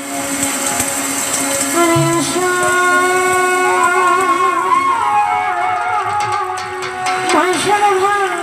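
Live Bengali Baul song: held keyboard notes, then a woman's singing voice comes in about two seconds in with long, wavering notes over the accompaniment.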